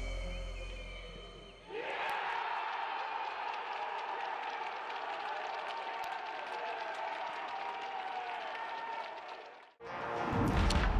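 Background music fading out, then the match sound from the pitch after a penalty goal: players shouting and cheering, with some clapping, echoing in an empty stadium. It cuts off suddenly near the end.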